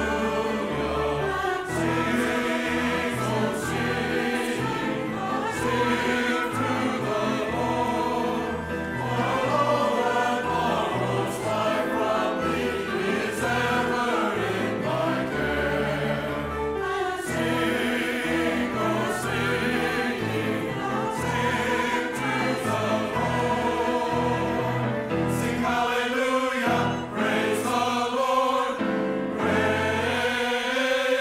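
Mixed church choir singing a peppy anthem in several parts, with piano accompaniment.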